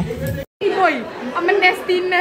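Indistinct chatter of several voices, broken by an abrupt silent cut about half a second in.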